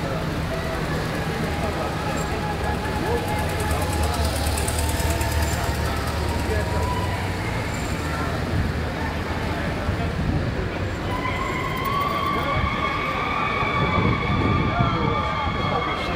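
Motorcade vehicles passing close by, engines running with a low rumble. About eleven seconds in, a steady siren tone starts and holds.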